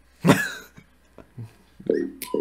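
A man coughing once, a short sharp burst about a quarter second in, followed by a few faint small sounds and the start of a voice near the end.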